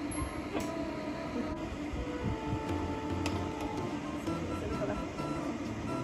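Light background music over the steady running of a pet blow dryer.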